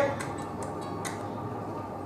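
A pause in speech: room tone with a steady low hum and a few faint clicks in the first second.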